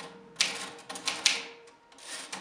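Keys of a portable manual typewriter being struck in an irregular run of about half a dozen keystrokes, each a sharp clack.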